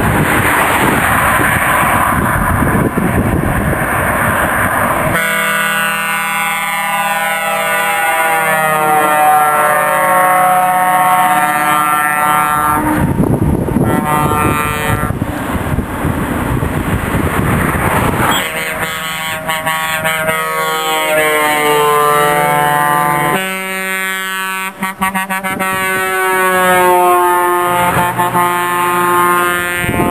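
Trucks passing with their air horns sounding in three long multi-note blasts, the pitch sliding down as each truck goes by, between stretches of engine and tyre rush.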